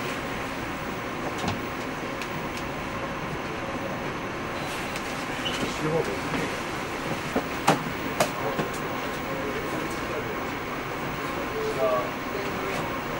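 Steady mechanical hum with a thin high whine running through it, broken by a few sharp knocks, two of them close together about eight seconds in, with faint voices in the background.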